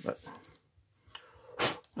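A man's voice saying one word, then about one and a half seconds in, a short, loud, breathy vocal burst like a sneeze or huff.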